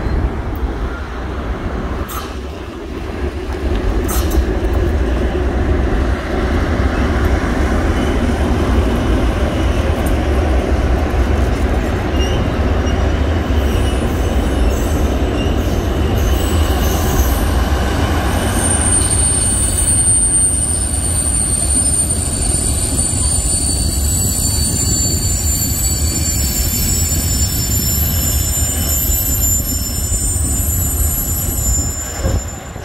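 A freight train of timber and covered sliding-wall wagons rolling past with a steady rumble, with two sharp clanks in the first few seconds. About halfway through, high-pitched wheel squeal sets in from the wagons' wheels. It holds several steady tones and grows stronger for the last third.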